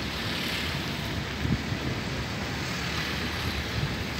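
Steady road and wind noise heard from inside a moving car, with a soft thump about a second and a half in.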